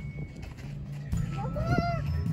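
Background music with a low, steady bass line. Near the end a held melodic note bends up and then back down.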